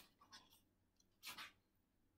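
Faint rustle of a paper book page being handled and turned: a short rustle just after the start and a louder swish about a second in.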